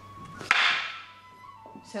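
Two wooden practice swords (bokken) striking each other once: a single sharp clack about half a second in, with a short ringing tail.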